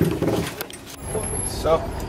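Talk and a few sharp knocks as people climb into an open safari vehicle. About a second in, this gives way abruptly to a steady low rumble.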